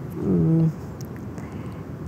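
A woman's voice making a short, drawn-out hesitation sound, a wordless hum of about half a second that dips slightly in pitch and then holds level. Quiet room tone follows.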